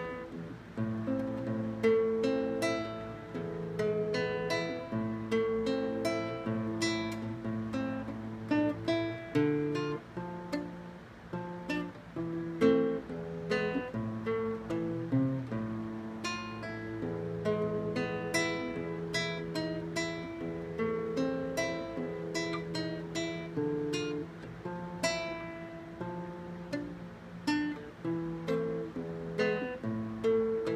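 Nylon-string classical guitar played fingerstyle, a solo étude: a continuous run of plucked notes, with low bass notes sounding under a higher melody.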